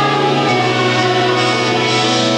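Live rock band playing loudly, a male voice singing a sustained line over electric guitar.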